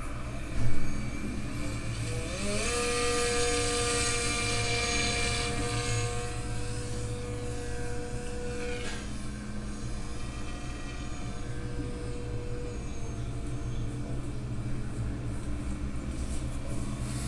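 Brushless electric motor and propeller of a small radio-control plane spooling up with a rising whine at the hand launch, then holding one steady whine that grows fainter as the plane flies off. A short loud knock comes just before the motor starts.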